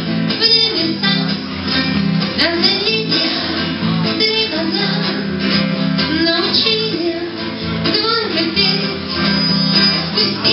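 A woman singing a rock song live, accompanying herself on strummed guitar.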